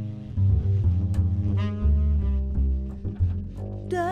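Jazz instrumental passage: an upright double bass plays a line of low notes, and a tenor saxophone plays a short run of notes in the middle.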